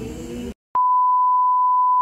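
Steady 1 kHz test tone, the reference beep that goes with SMPTE colour bars, cutting in sharply after a moment of dead silence about half a second in. It is preceded by the faint tail of the previous scene's background sound.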